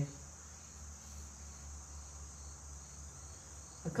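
Crickets trilling steadily in a continuous high-pitched chorus, with a faint low hum underneath.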